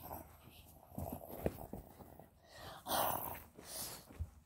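A child's growling and breathy hissing noises voicing plush toy lions fighting, with light rustles and taps of the plush toys handled close to the microphone; the loudest is a breathy burst about three seconds in.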